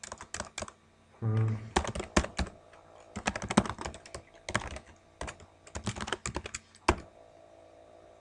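Typing on a computer keyboard: runs of quick key clicks with short pauses between them as a line of code is typed.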